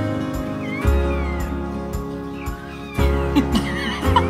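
Newborn American bully puppy squeaking in short high cries, about a second in and again near the end, over steady background music.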